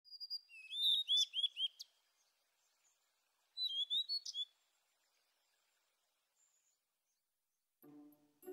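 A small bird chirping in two short bursts of song. The first phrase is a quick run of repeated arched notes and lasts nearly two seconds. A shorter phrase of rising notes comes about three and a half seconds in.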